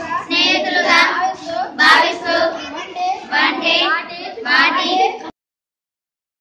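Children singing a song together in phrases, the singing stopping abruptly about five seconds in.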